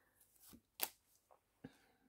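Oracle cards being drawn from the deck and laid down on a cloth spread: a few soft, short card flicks and taps, the clearest just under a second in.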